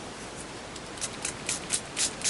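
Small pump spray bottle squirting water in a quick run of short sprays, about four a second, starting about a second in.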